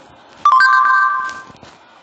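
Short electronic chime from an Android tablet: a click about half a second in, then a chord of a few steady tones that rings for about a second and fades out.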